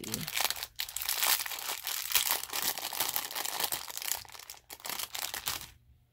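Small clear plastic bead bag crinkling steadily as it is handled and opened, dying away near the end.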